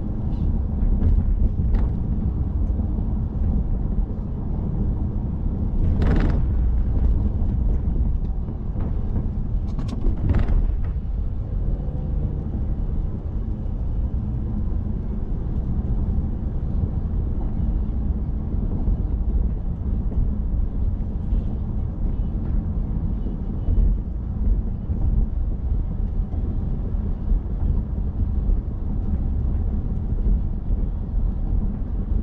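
Steady low road and engine rumble of a car driving along a city boulevard, with two brief louder whooshes about 6 and 10 seconds in.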